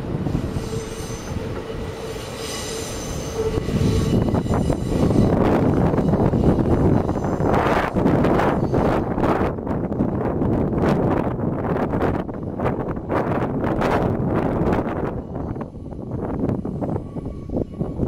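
Kintetsu 18400 and 15200 series electric train cars passing and pulling away, their wheels squealing steadily on the curving track for the first few seconds. After that, gusty wind noise on the microphone is the loudest sound, easing near the end.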